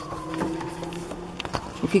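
A distant emergency-vehicle siren going by, its tone sliding slowly down in pitch. Over it come a couple of light clicks and rustles as a page of a spiral-bound paper book is turned.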